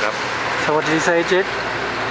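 A voice speaking briefly over a steady background noise.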